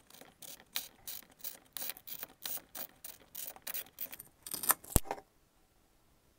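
A clear bottle being turned by hand against the edge of a homemade vise-mounted cutter, scoring a line around it: rhythmic short scraping ticks about three a second, ending in a louder scrape and a sharp click a little before the fifth second.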